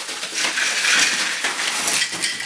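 Yellow mailing envelope being torn open and crumpled by hand, giving a dense crinkling and rustling of paper packaging.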